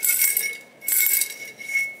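Hand rummaging through folded paper strips in a bowl: two bursts of rustling, about a second apart.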